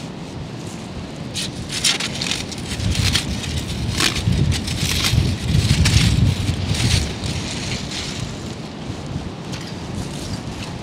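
Wind buffeting the microphone with a heavy rumble that swells in the middle, over a run of sharp crunches from shingle pebbles being disturbed by the scoop and boots.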